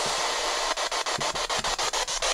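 Spirit box (ghost-hunting radio scanner) sweeping through radio stations: steady radio static, chopped into rapid regular clicks about eight times a second from about a second in.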